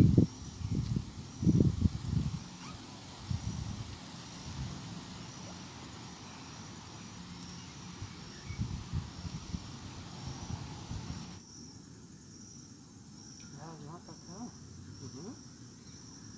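Insect chirping steadily outdoors, a short high chirp repeated about twice a second. In the first three seconds there are a few louder low rumbling bumps.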